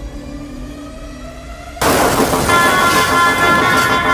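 Cinematic trailer soundtrack: a slowly rising tone builds, then a sudden loud crash hits about two seconds in, followed by a sustained high ringing chord over dense noise.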